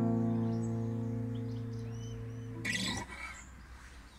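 Final strummed chord on an acoustic guitar ringing out and slowly fading, then cut off with a short rustle just under three seconds in. Faint bird chirps can be heard in the background.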